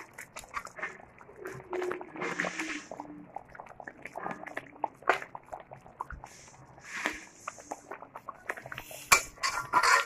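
Curry gravy simmering in a metal pan with bitter gourd pieces in it, with irregular small clicks and soft pops, and a spoon knocking against the pan. A brief faint pitched sound comes about two seconds in.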